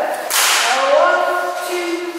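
Dance music with held sung notes, cut by one sharp crack with a hissing tail about a third of a second in.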